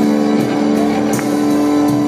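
Live rock band music: a long held chord over drums and cymbals.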